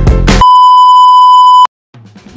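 The background music breaks off about half a second in and gives way to a loud, steady electronic beep tone at one fixed pitch. The beep lasts just over a second and cuts off suddenly into dead silence.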